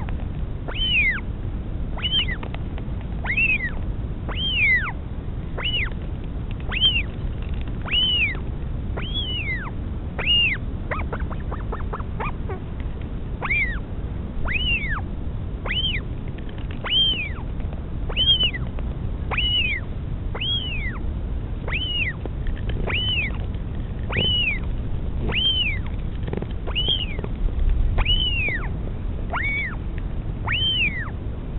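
Northern royal albatross chick begging while being fed: a steady run of short, high peeping calls, each rising then falling, about one a second. A quick rattle of clicks breaks in about eleven seconds in, over a low rumble of wind on the microphone.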